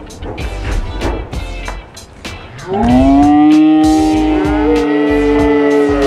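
Background music with a beat, then two men letting out a long, held celebratory yell starting almost three seconds in, the second voice joining about a second later.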